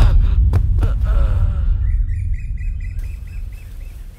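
A deep low rumble left from a musical hit fades away steadily. A little past halfway comes a quick run of about eight short bird-like chirps.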